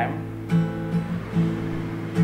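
Steel-string acoustic guitar strumming an A minor chord, with about four strums roughly half a second apart and the chord ringing between them.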